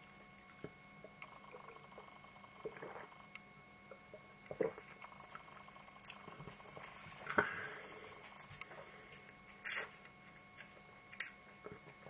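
Faint, scattered mouth sounds of a man tasting beer: small lip smacks and tongue clicks, with a few short hissy breaths, the clearest about two-thirds of the way in and near the end.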